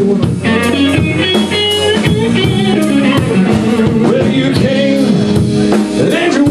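Live blues band playing: electric guitar, electric bass and drum kit, with high guitar notes ringing out over the beat in the first couple of seconds.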